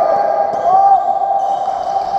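Court shoes squeaking on a wooden badminton court floor: several short squeaks that rise and fall in pitch, with voices in the hall behind them.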